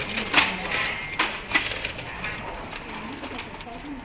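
The plastic paper cassette of a Canon LBP226dw laser printer being handled and loaded with paper, giving several sharp plastic clicks and knocks in the first two seconds, then lighter rattling.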